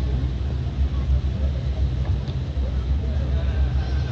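A loud, muddy low rumble of bass from an outdoor stage's PA speakers, heavy enough to swamp the phone's microphone, with faint voices above it.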